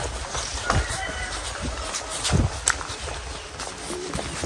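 Footsteps walking on a stony dirt road, dull thuds coming roughly once a second over a haze of outdoor noise.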